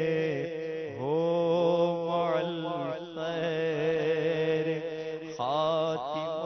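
A man's voice chanting an Urdu devotional munajat (supplication), holding long, wavering notes, with new phrases starting about one second and five and a half seconds in.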